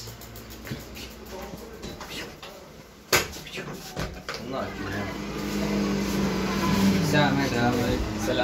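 Indistinct voices in a small room, growing louder in the second half, with a single sharp knock about three seconds in.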